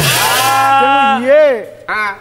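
A man's voice drawing out one long sung note that wavers and then falls away, over a bright ringing wash of small hand cymbals at the start, closing a sung line of the Pala; a short vocal sound comes near the end.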